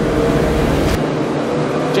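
A full field of motocross bikes revving together on the start gate, a dense steady engine drone. About a second in there is a sharp crack and the low rumble drops away.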